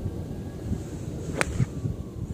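A golf iron striking a ball once, a sharp crisp click about one and a half seconds in, from a solidly struck shot. Wind rumbles on the microphone throughout.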